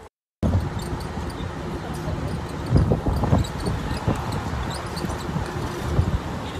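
Wind buffeting a phone microphone outdoors, with irregular low rumbling gusts over background city noise. It starts abruptly after a brief dropout.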